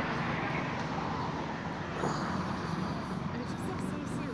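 Steady low engine hum over an even outdoor background noise.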